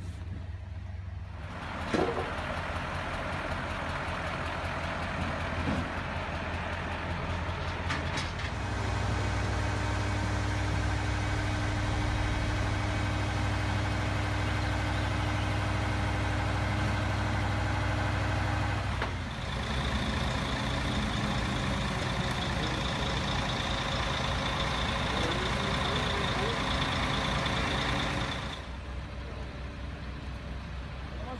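A truck-mounted mobile crane's diesel engine runs steadily during a lift. It gets louder and steadier about eight seconds in. From about two-thirds of the way a high steady whine joins it, and it drops back just before the end. There is a sharp knock about two seconds in.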